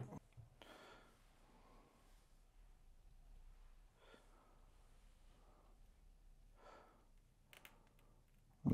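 Near silence: room tone with a few faint breaths.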